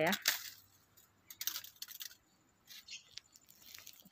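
Brief crisp snaps and rustles of long-bean vines being picked, in two short bursts about a second and a half in and near three seconds in.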